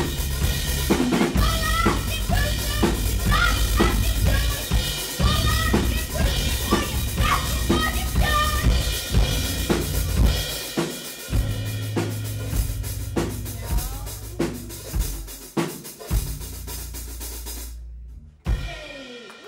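Live band playing: a drum kit and bass guitar with a singer. The music stops suddenly near the end.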